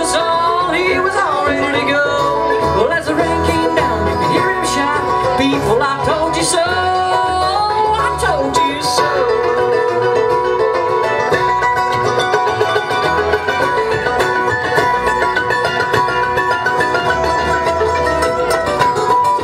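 Live bluegrass band playing an instrumental break on mandolin and flat-top acoustic guitar over a low bass pulse. Sliding lead notes in the first half give way to steadier held notes after about nine seconds.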